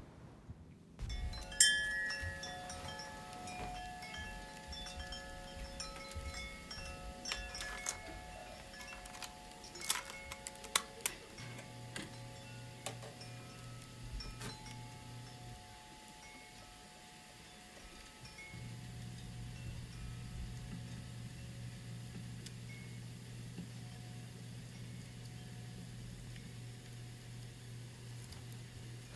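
Chime-like ringing tones that start about a second and a half in and overlap and sustain, with a few sharp clicks around ten seconds. A low steady hum comes in about eleven seconds in, drops out briefly, and returns.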